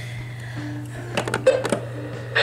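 A few sharp clicks from the buttons of an AlertWorks EAR-10 weather radio being pressed to switch on its NOAA weather broadcast. A short low tone sounds about half a second in, and a steady low hum runs underneath.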